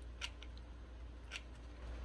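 Faint handling noise from a hot glue gun and a wooden craft flower: two light, sharp clicks about a second apart, with a couple of smaller ticks between, over a low steady hum.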